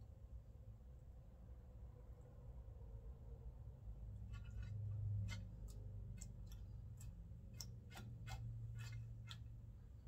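A run of about a dozen small, sharp, irregular clicks starting about four seconds in, like metal feeding tongs clicking, over a low steady hum.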